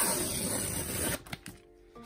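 Tear strip being ripped along a cardboard mailer envelope: a rough tearing for about a second, then a couple of light paper clicks.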